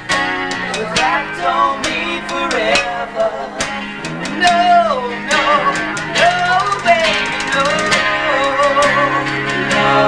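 Unplugged rock band jamming an instrumental break on acoustic guitars: a lead guitar plays bent, wavering notes over strummed chords.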